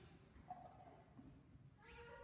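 Near silence: quiet room tone, with a faint short high-pitched sound about half a second in and a voice beginning near the end.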